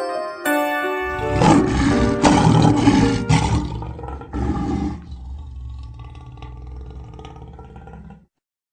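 Outro logo sting: a few bright chime notes, then about a second in a lion's roar sound effect with a deep rumble under it, a shorter second roar about four seconds in, and a ringing musical tail that fades out.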